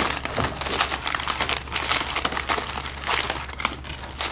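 Plastic film wrappers of individually packed French Pie biscuits crinkling as the packets are shuffled and spread across a wooden table, a dense run of fine crackles that comes in a few thicker flurries.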